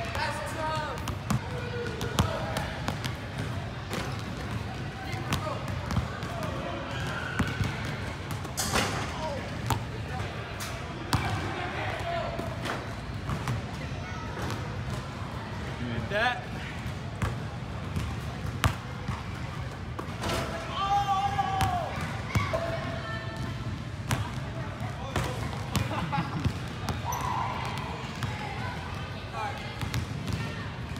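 A basketball bouncing on a hardwood gym floor, a string of irregular thuds.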